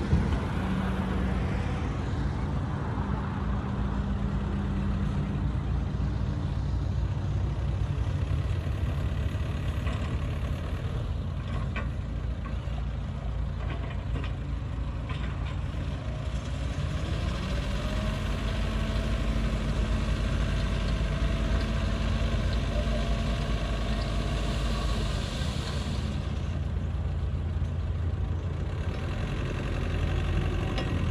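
Diesel engine of a 5-ton dump truck running steadily while its hydraulic hoist tips the bed up to dump a load of soil. A faint whine rises and holds through the second half.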